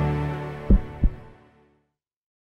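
Logo intro music sting ending: a sustained low chord fading out, with two deep thumps about a third of a second apart near the middle.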